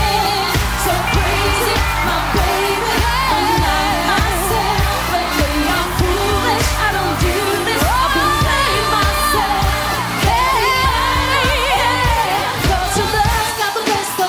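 Live pop-R&B song: women singing with wavering vocal runs over a backing track with a steady drum beat.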